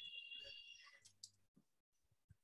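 Faint computer keyboard typing: a quick run of key clicks that thins out after about a second and a half, with a faint high-pitched tone over the first second.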